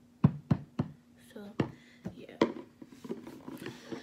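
Handling noise: three quick, sharp knocks in the first second, then two more spaced out, as things are picked up and set down close to the microphone, with quiet mumbled speech between.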